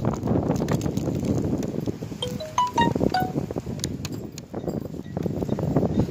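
Close-up eating: a paper pastry wrapper crinkling and clicking as a cannoli is bitten into, over steady outdoor background noise. About two seconds in, a short melody of about five clear chime-like notes sounds briefly.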